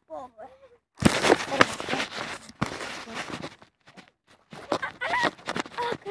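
A loud burst of rustling and knocking right on a handheld phone's microphone for about two seconds, starting a second in, as the phone is handled and swung about. Children's voices are heard briefly at the start and again near the end.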